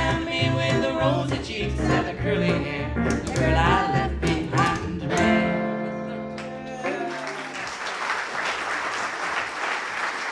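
Western swing trio of archtop guitar, fiddle and upright bass playing with singing, closing on a held final chord about five seconds in. Audience applause breaks out about two seconds later and carries on.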